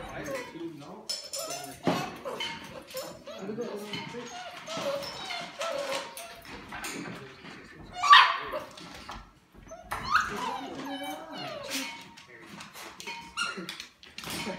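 Golden retriever puppies whining and whimpering, many wavering cries overlapping. There is a loud high yelp about eight seconds in and another near ten seconds.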